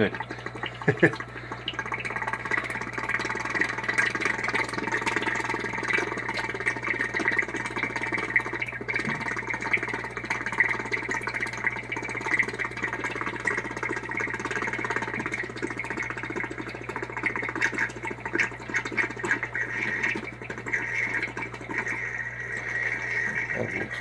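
Jet aquarium gravel vacuum sucking tank water through its hose, making a steady weird noise.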